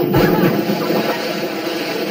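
A man jumping into a swimming pool: one heavy splash just after the start, then continuous splashing and churning water as he moves about in it.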